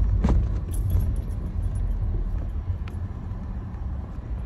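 Car cabin rumble of engine and road noise while driving, heard from inside the car, with a sharp click just after the start and another about three seconds in.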